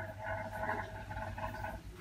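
Faint ballpoint pen writing numbers on paper, a light scratching over low room tone.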